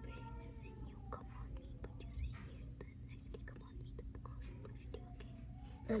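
Children whispering quietly, with scattered small clicks and rustles.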